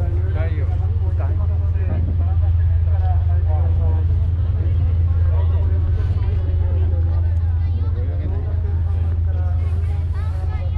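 Steady low hum of a moored sightseeing boat's engine running at idle, with people talking over it.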